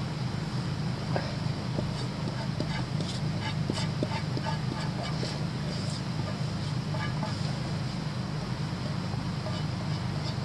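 Scattered light clicks and crackles of cooking at a campfire, from a utensil working in a frying pan and the burning embers, over a steady low hum. The clicks cluster in the first two thirds and thin out near the end.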